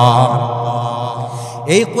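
A man's voice chanting a sermon in a drawn-out, sung tone into a microphone, holding one long note that slowly fades, then starting a new rising phrase near the end.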